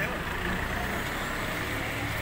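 A motor vehicle engine running steadily, with a low hum under a wash of street noise and faint voices.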